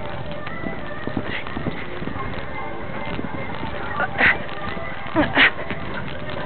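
A horse moving round a sand arena, heard from on board: its hoofbeats on the sand surface and a steady rush of movement noise, with a few louder sharp sounds about four seconds and five seconds in.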